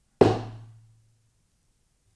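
A single sharp knock of a wooden Zen stick striking down once, with a short low ring that dies away within about a second.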